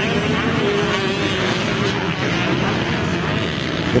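Motocross bikes running on the dirt track, their engines blending into a steady drone with a held, slightly wavering pitch.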